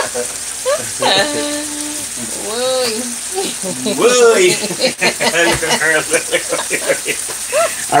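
Frying pan of pork and tomato gravy sizzling on the stove, with a person's voice making short wordless sounds over it.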